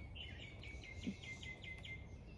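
Faint, rapid series of high chirps, about five a second, over a thin steady high whistle, from a small animal calling.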